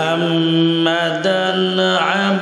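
A man chanting Arabic recitation in a melodic style, holding a long drawn-out note and then moving to a higher note a little past halfway.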